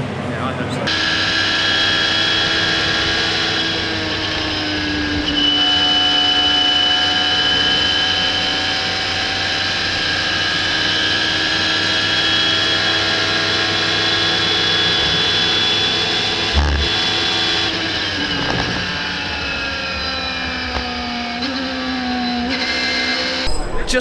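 Radical SR3 race car's engine heard through the onboard camera at high revs, its pitch holding steady with slow rises and falls. About two-thirds of the way through there is a sharp knock, then the pitch drops as the car slows and shifts down, and it climbs again in steps near the end.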